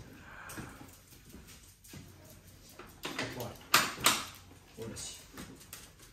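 A Foppapedretti Up3 pram chassis carrying an infant car seat is pushed across a tiled floor: the wheels roll quietly and the frame gives scattered clicks and knocks, the two loudest about four seconds in.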